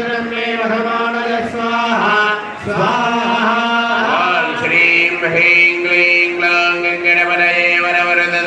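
Hindu priests chanting Sanskrit homa mantras, Vedic verses offered into the sacred fire, in a steady recitation with long held notes.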